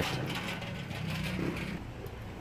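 Street traffic noise with a vehicle engine running steadily, a low hum that stops just before the end.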